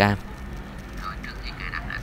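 A faint, thin voice from a YouTube video playing through a 2012 MacBook Pro's built-in speakers (Cirrus Logic CS4206B audio under Windows 10 Boot Camp). It shows that the repaired sound driver is working.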